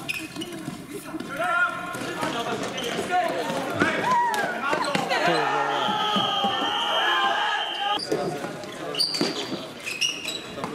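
Indoor floorball game sounds: players' voices calling out over the clatter of sticks, ball and shoes on the court. A steady high tone runs for about two seconds in the middle.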